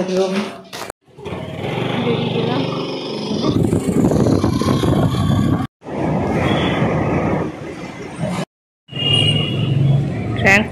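Motor scooter ridden slowly in traffic: the small engine running under a dense wash of road, wind and traffic noise. The sound drops out abruptly three times, at cuts between short clips.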